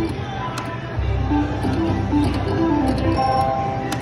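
Easy Money reel slot machine playing short electronic notes and chimes as its reels spin and stop, with a few sharp clicks, over a low casino-floor rumble.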